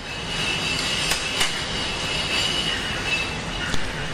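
A hand working pistachio shortbread dough in a glass bowl: a steady rubbing and scraping noise, with a thin high squeal held through most of it and a couple of small clicks about a second in.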